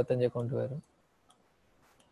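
A man's voice speaking for under a second, then quiet with two faint clicks.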